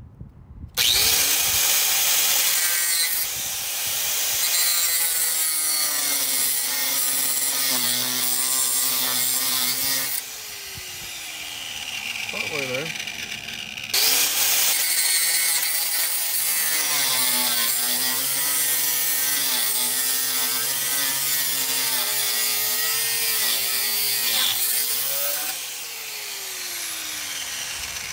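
Electric power grinder cutting through the head of a rusted, seized bolt, its motor whine dipping and wavering in pitch as it bites into the metal. It cuts in twice, easing off and winding down briefly in the middle, and runs lighter near the end.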